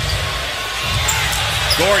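Basketball game sound in an arena: the ball being dribbled on the hardwood court over steady crowd noise, with a few short high sneaker squeaks.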